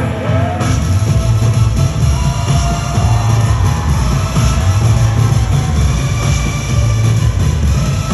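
Live electronic pop music played through an arena sound system, recorded on a phone among the crowd: a heavy pulsing bass line comes in about half a second in under synth and vocal lines.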